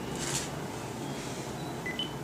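Quiet room ambience with low murmur while people pose, with a short high hiss a fraction of a second in and a brief high beep at the very end.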